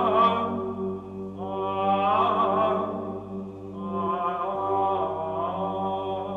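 Soundtrack music of chanting voices over a steady held drone, the melody moving in long sustained notes with short pauses between phrases.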